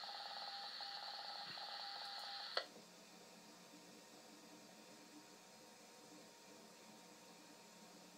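Old film soundtrack played through a TV speaker: a steady hiss with a quick pulsing beep over it, which stops with a click about two and a half seconds in, leaving only faint hiss.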